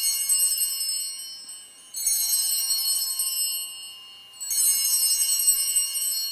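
Altar bells (a cluster of small sanctus bells) being rung during the elevation of the chalice: they are already ringing at the start, are struck again about two seconds in and a third time about four and a half seconds in, and each ring fades out.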